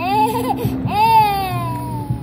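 A toddler squealing twice in high-pitched delight, a short squeal and then a longer one that slowly falls in pitch.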